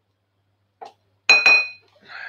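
A utensil clinking against a small bowl: a faint tick, then two sharp clinks a fifth of a second apart, each leaving a brief high ring.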